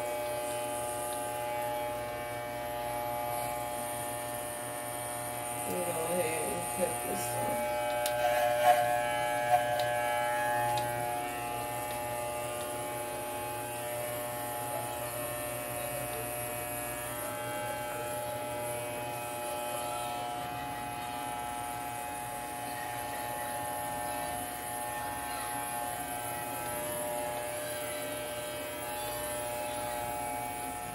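Wahl Designer electromagnetic hair clippers running with a steady buzz while cutting hair, with a few sharp clicks about a third of the way in.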